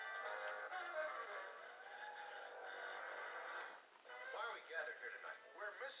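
Television playing in the background: music with held notes, then a voice talking from about four seconds in.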